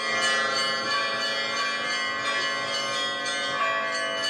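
Orthodox church bells ringing, several bells sounding together in a continuous peal.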